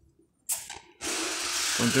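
Capsule counting machine (NEC-EM-MDO-20) starting to run about a second in: a steady rattling hiss from its vibratory feeder and the capsules, after a brief clatter just before. Nearly silent before that.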